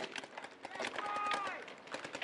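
Distant paintball markers firing: a quick, irregular run of sharp pops, with a faint shout from another player about halfway through.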